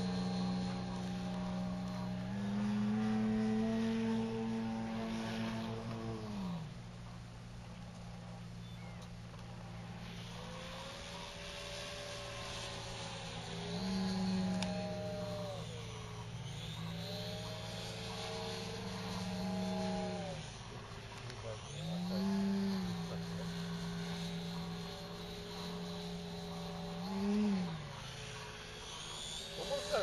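Radio-controlled Pitts Model 12 biplane flying overhead, its motor and propeller droning steadily. The pitch rises and falls several times.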